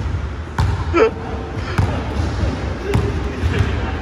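Basketball dribbled on a hardwood gym floor: slow, evenly spaced bounces about a second apart, three in all, each a sharp slap in a large gym.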